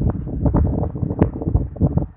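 Loud, irregular low rumbling and crackling on the microphone, like wind or handling noise, with many small knocks.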